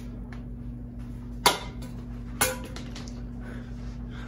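A steady low electrical hum, with two sharp clicks about a second apart near the middle.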